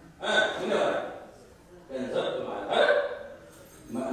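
A man preaching in Amharic into a microphone: two short spoken phrases with brief pauses between them.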